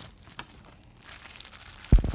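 Faint crinkling and rustling of plastic packaging being handled, with a few light clicks, then a sudden dull thump near the end.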